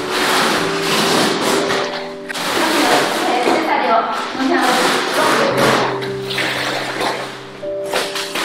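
Wallpaper being ripped and peeled off mirror glass, in a ragged run of paper tearing and crackling, under background music with a singing voice.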